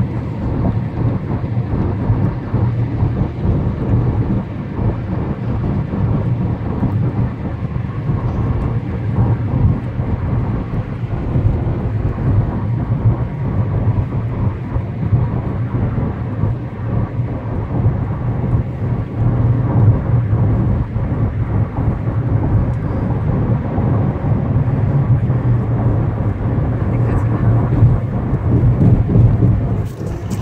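Steady road and engine noise heard inside the cabin of a moving car: a low, even rumble.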